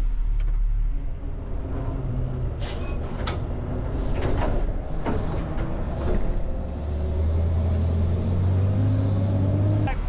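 Tow truck's engine running, with several clicks and knocks through the middle and an engine tone that rises slowly over the last few seconds.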